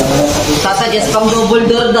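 People talking.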